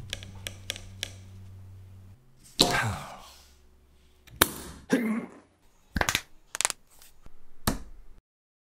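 A string of sharp, separate cracks and snaps, some followed by a short rattling tail, the largest about two and a half seconds in, as fading background music ends.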